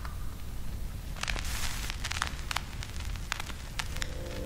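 Crackling static with hiss and irregular pops, louder in a cluster between about one and two seconds in.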